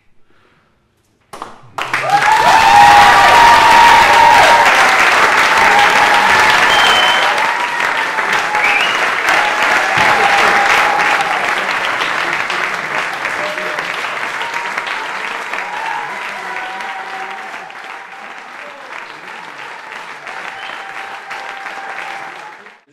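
Audience applauding, starting suddenly about a second and a half in and slowly dying away.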